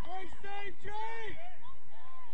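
Several people shouting and calling out with drawn-out, pitch-bending calls, over a steady low rumble.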